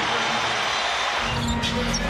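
Arena game sound of an NBA game: steady crowd noise and a basketball being dribbled on the hardwood, under arena music.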